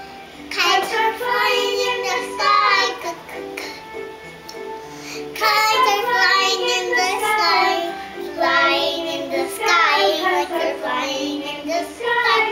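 A young girl singing a children's phonics song for the letter k over a recorded backing tune, in three sung phrases with short gaps between them.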